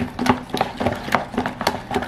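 Thick mayonnaise-and-ketchup sauce being stirred briskly in a plastic container, making a run of irregular wet clicks, about five a second.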